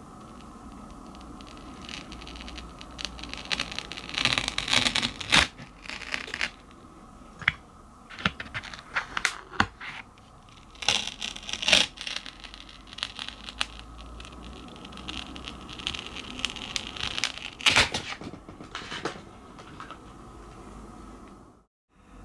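A thin plastic sheet being peeled away from the set edge of a model-water resin pour, with irregular crackling, scratching and tearing sounds as it comes free.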